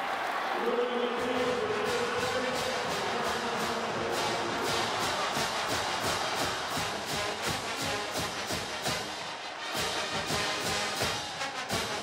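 Stadium marching band playing, brass over a steady drum beat, with the crowd cheering a touchdown.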